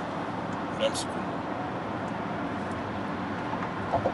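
Steady road and tyre noise inside a moving car's cabin.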